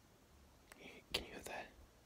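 A short whispered phrase of a few syllables, about a second long, broken by two or three sharp clicks.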